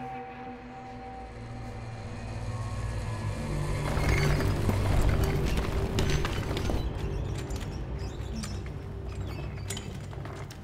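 Low ominous drone score swelling to its loudest about halfway through, with a wheelchair creaking and rattling as it is pushed over a rough dirt floor, its clicks and creaks coming in from about four seconds in.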